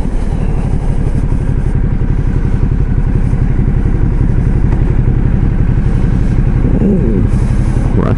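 Motorcycle engine idling steadily, heard from the saddle as the bike creeps up to a fuel pump, with a short sliding pitched sound near the end.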